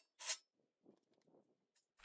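Near silence, with one brief, faint, hiss-like sound about a quarter second in.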